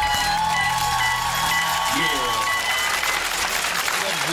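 A live band's final chord rings out with a held high note over steady bass, fading out about two and a half seconds in, while the audience applauds and a voice calls out midway.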